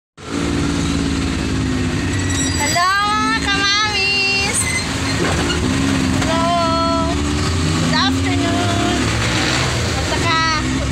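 Motorcycle engine of a tricycle running steadily under way, heard from inside its sidecar. High, wavering voice-like sounds break in about three seconds in, again around six and a half seconds, and briefly at eight.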